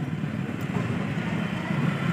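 A steady low mechanical hum with a light background haze; no distinct knock or creak stands out.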